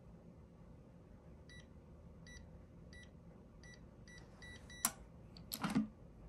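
Electronic safe keypad beeping once per key press as a code is entered: seven short, same-pitched beeps, the last few coming quicker. Then a sharp click, and a louder clunk and rattle as the knob is turned to open the unlocked door.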